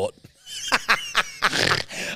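A man and a woman laughing, starting about half a second in after a brief pause.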